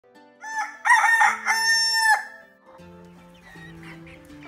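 A rooster crowing once: a loud cock-a-doodle-doo of a few short notes ending in one long held note, lasting about two seconds from half a second in.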